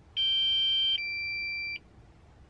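DJI flight app's low-battery warning alert for a Mavic Air: an electronic beep in two parts of just under a second each, the first louder than the second, stopping cleanly. It signals that the drone's battery has dropped to the 30% low-battery level.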